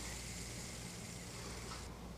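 Faint, steady high whirring hiss of a 3D-printed gear fidget spinner spinning on its 608 bearing. The hiss cuts off suddenly near the end.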